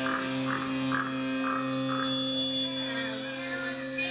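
Amplified electric guitar and bass holding a low droning note on stage, with a higher tone pulsing about twice a second for the first couple of seconds.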